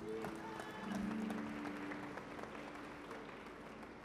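Low held musical notes over congregation applause, both slowly fading away.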